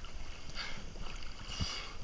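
Water sloshing and splashing right at a camera held at the surface of a river pool as a swimmer strokes along, an irregular wash of soft splashes with a low bump near the end.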